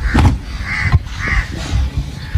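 A crow cawing twice, about half a second apart.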